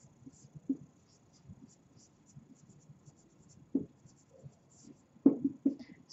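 Marker squeaking in many short strokes on a whiteboard as a word is written out, with a few soft low thuds about four and five seconds in.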